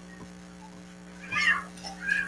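A short, high, pitched animal call about one and a half seconds in, over a steady low hum.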